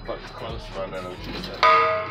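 A sudden metallic clang about a second and a half in that keeps ringing briefly, most likely the steel exhaust pipe knocking against the metal welding cart.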